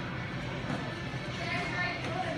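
Indistinct voices of people talking, one voice more distinct near the end, over a steady low background hum.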